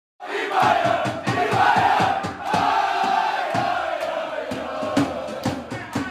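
A group of men chanting and shouting together over a quick, steady beat, like a team celebrating in a dressing room.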